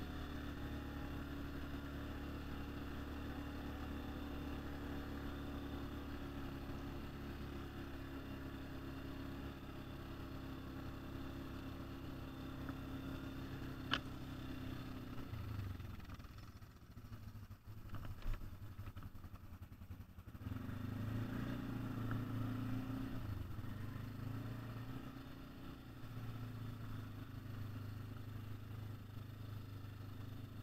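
An ATV engine running steadily while riding along a trail. About halfway through the engine sound drops away for a few seconds, with a sharp click and a later thump, then picks up again.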